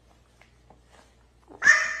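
A quiet stretch with a few faint ticks, then about one and a half seconds in a short, high-pitched squeal from a child's voice that fades quickly.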